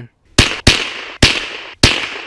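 Four shots from a scoped Marlin .22 rimfire rifle in quick succession, each a sharp crack followed by a short fading echo. The second comes close behind the first, and the last two are spaced further apart.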